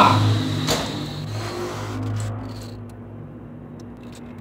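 A plastic spoon stirring a thick milk cream in an aluminium pot, with one sharp knock of the spoon against the pot about a second in, over a steady low hum.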